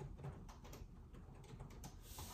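Faint, irregular clicking of typing on a computer keyboard.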